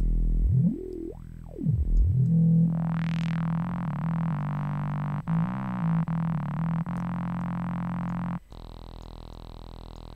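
Native Instruments Massive software synthesizer playing notes through two filters in serial, including a double-notch filter, with filter key tracking shaping the tone as different keys are played. A pitch glide rises and falls about a second in and a bright swell comes near three seconds, then steady notes change a few times before the sound turns quieter near the end.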